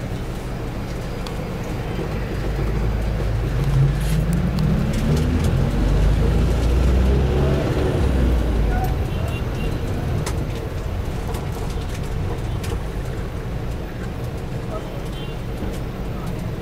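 Bus engine and road rumble heard from inside the cabin while driving. A few seconds in, the engine pitch rises and the sound swells as the bus accelerates, then settles back to a steady run.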